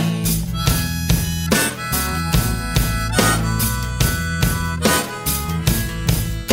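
Instrumental break of a rock song: a harmonica solo over a steady drum beat, bass and guitar.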